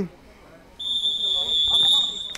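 A referee's whistle blown in one long, steady, high blast starting about a second in, signalling the free kick to be taken.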